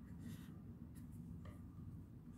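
A pen writing on paper: faint short scratching strokes as numbers are written, over a low steady hum.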